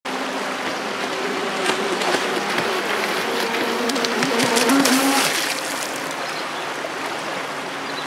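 Pro Boat Shockwave 26 RC boat's electric motor whining over a river's steady rush. The whine wavers in pitch, grows loudest and rises about four to five seconds in as the boat turns and throws spray, then falls back.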